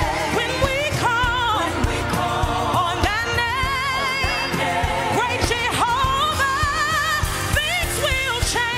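Live gospel worship song: a lead singer with a wavering vibrato and backing singers, over band music with a steady beat.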